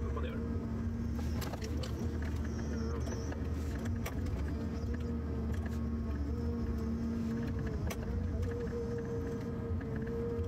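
Forest harvester's engine and hydraulics running steadily: a low rumble with a steady hum that wavers slightly in pitch, and scattered light clicks and knocks.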